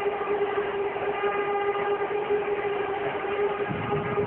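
A steady droning tone with a stack of overtones, held unbroken at one pitch, over a background hiss of stadium crowd noise.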